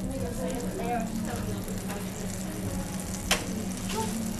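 Faint sizzling from a crepe griddle over a steady low hum, with one sharp click a little past three seconds in.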